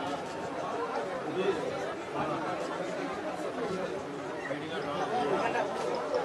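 Several people talking at once in overlapping chatter, with no single voice standing out.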